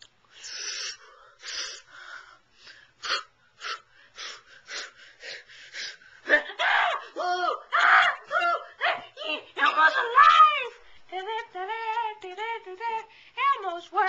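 A high-pitched voice making wordless sounds: breathy huffs and hisses at first, then, from about halfway, a string of sing-song notes that rise and fall.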